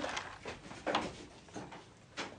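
Wooden closet door being shut: two short knocks about a second apart.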